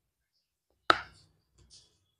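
Biting into a two-finger white chocolate KitKat wafer bar close to a clip-on microphone: one sharp crack about a second in, then a couple of soft crunches.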